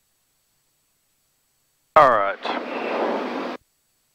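A brief, unintelligible radio transmission over the aircraft's audio feed, about a second and a half long: a short voice-like pitched sound, then a steady radio hiss that cuts off abruptly when the transmission ends.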